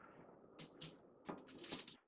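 Faint handling noises as small cut sandwich pieces are laid out: two light taps, then a quick run of crisp clicks and rustles near the end.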